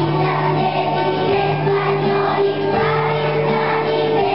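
Large choir of primary-school children singing a Christmas song together, over an accompaniment that holds long low notes, changing pitch every second or so.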